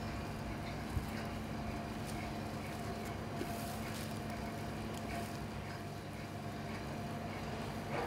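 Steady background room hum with faint rustles and ticks of hands knotting a cotton bandage over a wet plaster backslab, and one short click about a second in.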